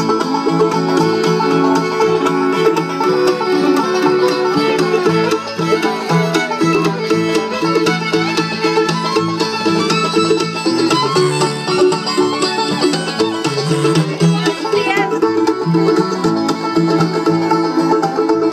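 Live bluegrass band of banjo, fiddle, mandolin, upright bass and acoustic guitar playing an instrumental break between sung verses, the banjo prominent over a steady walking bass.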